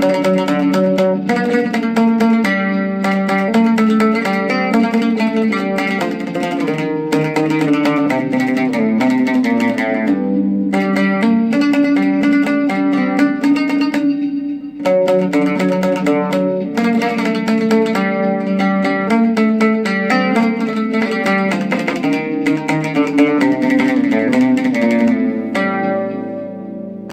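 Oud played solo: a quick melody of plucked notes, with a brief break about halfway through before the playing picks up again.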